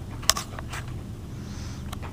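Handling noise from a phone held against a cat's fur: a sharp click about a third of a second in and lighter clicks later, over a steady low rumble.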